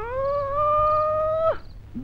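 A single long howl: it rises at the start, holds steady on one pitch, then drops away and stops about one and a half seconds in.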